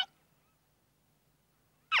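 Mostly near silence, framed by a cartoon character's squeaky, high-pitched gibberish voice. One utterance is cut off at the very start, and another sliding, questioning "huh?" begins near the end.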